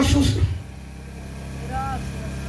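A man preaching in Spanish through a microphone and PA loudspeaker, his words trailing off about half a second in. A steady low hum runs underneath, and a brief faint voice sounds near the end.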